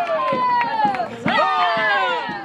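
Dancers' long, high-pitched group cries, several voices together, each falling in pitch. There are two in a row, the second starting just past halfway, with sharp knocks in between.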